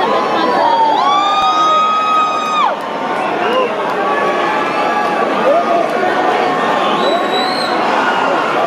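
Concert crowd cheering and screaming before the music starts. One loud, long high "woo" from someone close by comes from about one second in until nearly three seconds, and a shorter high shout comes near the end.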